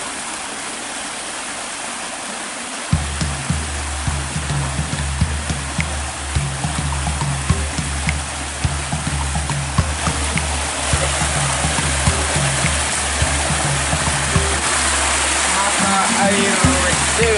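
Spring water running and splashing out of a rock outlet in a steady rush. Background music with a steady bass comes in about three seconds in.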